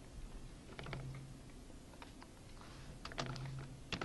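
Computer keyboard typing: a few short clusters of keystrokes, faint and spaced about a second apart.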